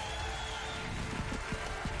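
Quiet background music from an online slot game, with a few soft ticks in the second half as the reels spin and land.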